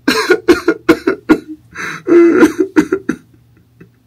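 A man's voice in a run of short, breathy outbursts, about a dozen in three seconds with one longer burst near the middle, stopping a little after three seconds.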